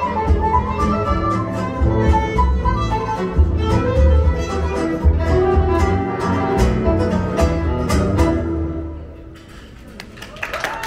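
Live gypsy jazz: violin carrying the melody over double bass, acoustic guitar and keyboard. The music fades out about a second before the end as the tune finishes.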